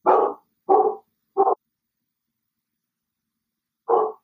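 A dog barking in the background: three short barks in quick succession.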